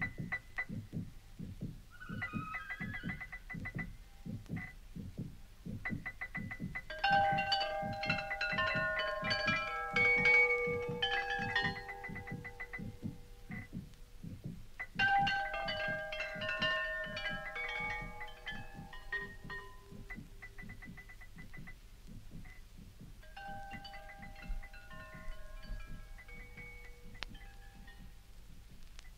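1960s electronic tape music (musique concrète): a steady, rapid low pulse under clusters of high, bell-like electronic tones that come in three waves and thin out near the end.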